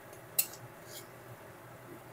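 A silicone spatula stirring thick masala paste as it fries in a metal kadai, giving faint scraping and squelching and one sharp tick a little under half a second in.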